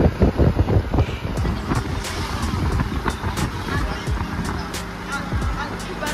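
A vehicle driving along a rough road: steady engine and road rumble with occasional sharp knocks, and music and voices faintly underneath.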